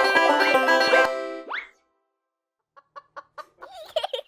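Banjo-led music ends about a second in, followed by a short rising cartoon sound effect. After a brief pause a cartoon hen clucks in a quick series of short clucks.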